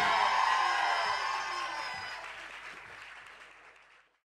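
The last guitar chord of a live rock song ringing out, with audience applause, all fading away over about three and a half seconds.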